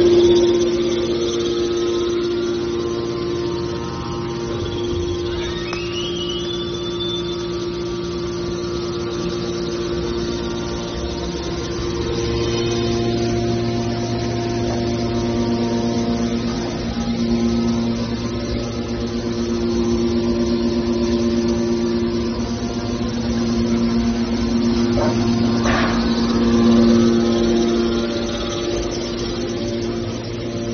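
Hydraulic power unit of a scrap-metal baler running: a steady hum made of several tones, its low tones changing in strength about 12 and 17 seconds in. A short rising squeal about five seconds in, and a brief noise near the end.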